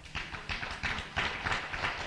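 Audience applauding: many quick, irregular claps that start suddenly and keep on steadily.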